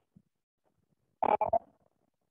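A brief voiced utterance, a syllable or short word, about a second in, otherwise quiet room.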